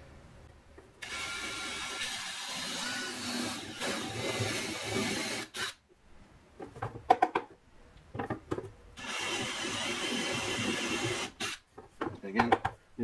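Cordless DeWalt drill with a step bit boring a hole through a wooden plate, the motor whining steadily in two runs of a few seconds each, with a few knocks and clicks in the pause between them.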